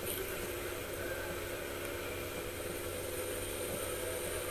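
Canister vacuum cleaner running steadily while its hose nozzle is worked over carpet: a constant motor hum with a rush of air.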